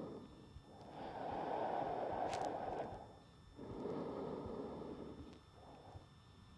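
A man's slow, deep breathing while he holds a yoga stretch. There are two long, audible breaths of about two seconds each, the first the louder.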